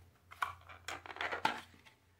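Thin plastic wax-melt clamshell crackling as it is handled, a few short crackles over about a second and a half.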